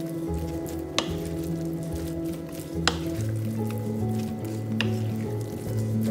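Wooden spoon stirring white and black glutinous rice in a ceramic bowl, with soft squishing and a few sharp knocks of the spoon against the bowl, about two seconds apart, over background music.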